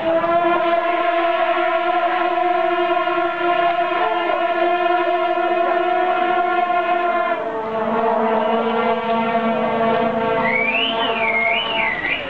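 Shaojiao, the long brass processional horns of a temple horn troupe, sounding long held blasts together at several pitches at once. The blended tone shifts to a new chord about seven and a half seconds in, and near the end a high wavering tone rises and falls over it.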